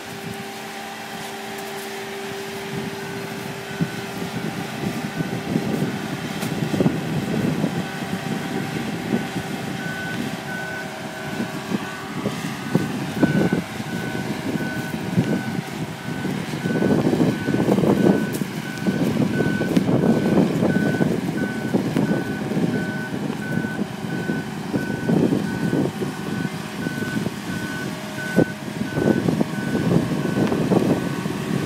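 Mobile boat travel lift driving with a sailboat in its slings: its engine runs under load, growing louder with surges partway through, while its motion warning alarm beeps steadily and evenly from a few seconds in.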